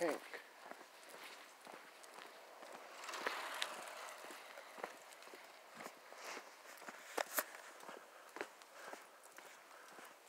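Faint footsteps on an asphalt path, irregular soft steps, with a brief soft hiss about three seconds in.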